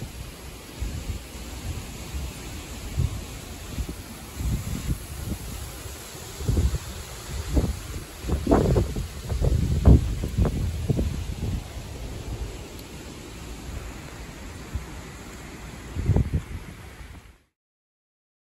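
Gusty wind ahead of a storm buffeting the microphone in irregular low thumps over a steady rushing noise, strongest around the middle; the sound cuts off shortly before the end.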